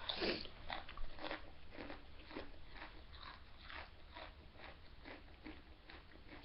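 A person chewing a Doritos tortilla chip with the mouth close to the microphone: crisp crunches about three a second, growing fainter as the chip is chewed down.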